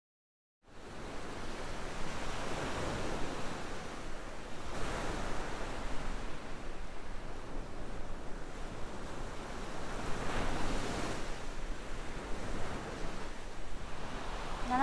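Surf breaking on a sandy beach: a steady wash of waves that swells and ebbs every few seconds, starting after about half a second of silence.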